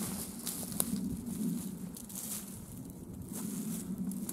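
Rustling of cloth being handled, with scattered soft clicks and crackles, as a folded plaid garment is picked up and gathered against the body.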